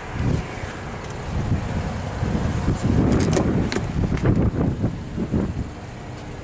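Irregular low rumble of wind and handling noise on a hand-held camera's microphone, swelling through the middle, with a few sharp clicks a little past halfway.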